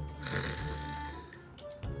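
A man's breathy, snort-like laugh through the nose, loudest about a quarter-second in and fading within a second, over soft background music.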